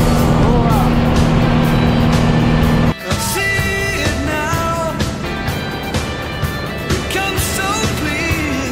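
Steady drone of a single-engine light aircraft heard inside the cabin, with a voice over it, cut off abruptly about three seconds in by music with a melodic line.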